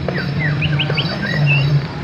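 Quick high chirps like a small bird's, with three in a fast row a little over half a second in, over a steady low hum.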